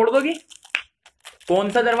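A man talking, with a short pause in the middle of what he says.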